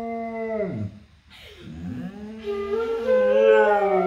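A dog howling in response to a flute being played. The first howl ends with a falling slide just under a second in, and after a short pause a second howl rises and is held, wavering a little.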